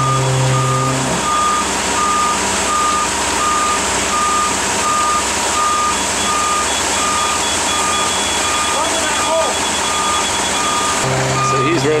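Laser level's grade receiver beeping steadily, about two beeps a second at one pitch, as the depth of the concrete is checked; from about halfway a second, higher and faster beeping joins in. Under it runs the steady noise of a concrete mixer truck's engine as it pours.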